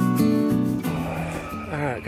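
Acoustic guitar background music that stops about half a second in, followed by a man's voice starting to speak near the end.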